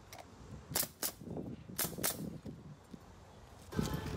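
Pneumatic roofing nailer firing nails through asphalt ridge cap shingles: about four sharp shots in two pairs, the shots in each pair about a quarter-second apart.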